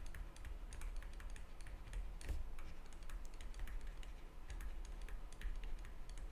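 A digital pen tapping and scratching on a tablet while handwriting: a faint, irregular run of light clicks over a low steady hum.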